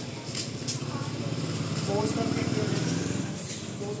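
A motorcycle engine running close by, louder in the middle two seconds and fading toward the end.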